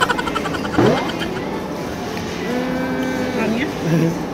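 A woman's wordless voice: a rising exclamation about a second in, then a held hum for about a second, over steady background noise.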